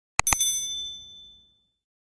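Two quick mouse-click sound effects followed by a bright bell ding that rings out and fades over about a second: the notification-bell chime of an animated subscribe-button end screen.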